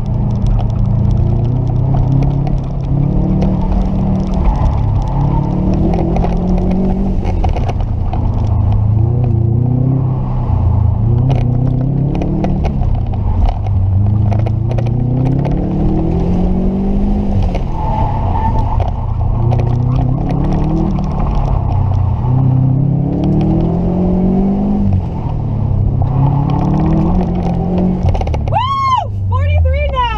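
Subaru WRX STI's turbocharged flat-four engine heard from inside the cabin, revving up and dropping back over and over, roughly every two seconds, as the car is driven hard through a cone course. A brief high-pitched sweeping sound comes near the end.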